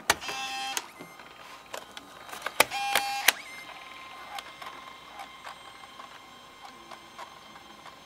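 Floppy disks pushed into a ThinkPad A31's two LS-240 SuperDisk drives, one after the other. Each goes in with a click, and the drive mechanism whirs for under a second as it loads the disk; the second one comes about two and a half seconds in. A faint steady whine follows.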